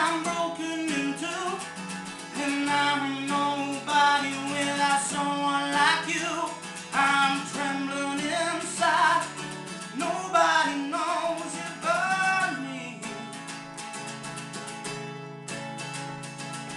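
A man singing over a strummed acoustic guitar. The voice stops about three-quarters of the way through, leaving the guitar strumming chords alone.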